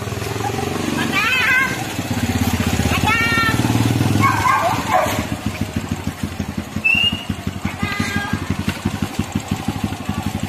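Motorcycle engine running as the bike is ridden in, then idling with an even, rapid thump from about five seconds in. A voice calls out over it several times.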